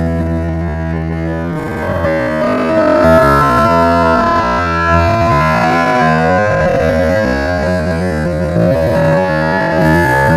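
A live band of acoustic and electric guitars playing a song with a strong steady bass line, cutting in abruptly after a moment of silence.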